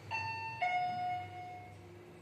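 Fujitec elevator arrival chime: a short higher electronic tone followed by a longer lower one, the car signalling that it has reached its floor, over the car's steady low hum.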